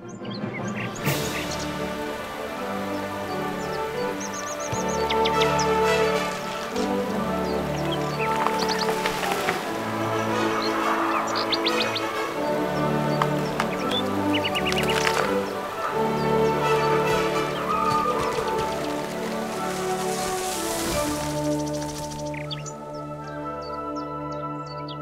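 Wind band music: sustained chords with several cymbal-like swells, and short high bird-like chirps over them now and then.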